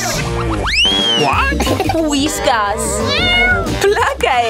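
Cartoon sound effects over background music: a springy boing about a second in, then a drawn-out, wavering cat meow.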